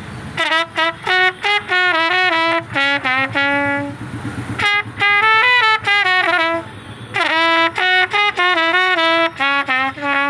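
A solo trumpet plays a melody in short phrases of quick notes and a few held notes. The phrases break off about four seconds in and again around seven seconds.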